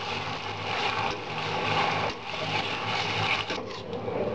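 Metal slotted spatula scraping and stirring button mushrooms and onions frying in oil in a steel kadai, the sizzling swelling and dipping with each uneven stroke.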